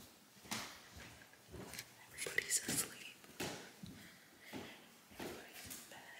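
A woman whispering to the camera in short, quiet phrases.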